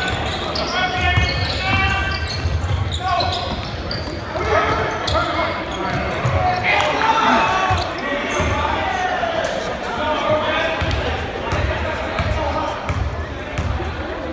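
Basketball game in a gymnasium: a ball bouncing on the hardwood court several times, amid indistinct shouts and chatter from players and spectators.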